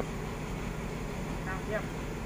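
Steady low hum of a stopped passenger train's diesel engine idling, with a faint distant voice briefly near the end.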